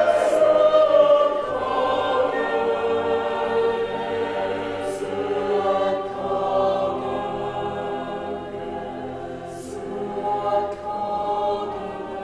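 Mixed choir of men's and women's voices singing a cappella in sustained, slowly changing chords. It is loudest at the start, then sings softer with a brief swell near the end, and the whole choir sounds an 's' together about every five seconds.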